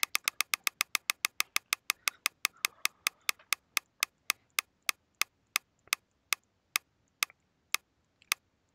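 Ticking sound effect of a spinning mystery-box item reel. The clicks start at about eight a second and slow steadily to about two a second as the reel winds down toward a stop.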